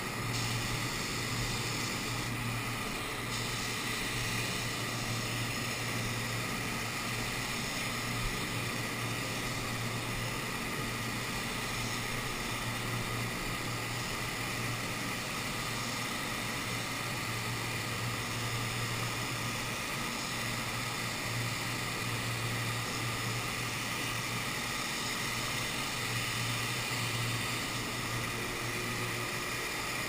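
Steady hum and hiss of running machinery, with a constant low drone underneath and no change throughout.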